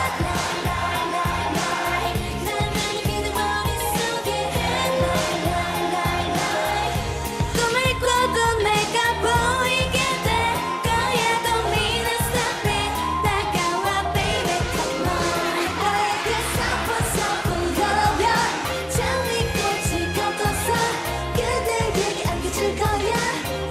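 K-pop girl group singing a dance-pop song into handheld microphones over a backing track with a steady, driving beat.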